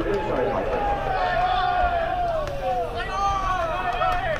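Football players' voices shouting long, drawn-out calls. One long call slowly falls in pitch, and more calls follow near the end.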